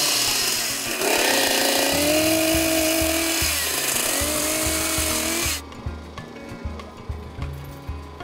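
Husqvarna two-stroke chainsaw running at high revs and cutting through a pine deck board; its pitch sags twice as the chain bites into the wood, then the sound cuts off suddenly about five and a half seconds in.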